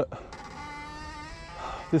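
A steady buzzing hum with several pitches sounding together, shifting slightly in pitch about a second and a half in.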